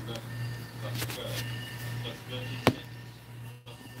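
Camera phone being handled and set onto an overhead mount: one sharp click about two-thirds of the way through, over a steady low hum and faint background voices, with a brief cutout near the end.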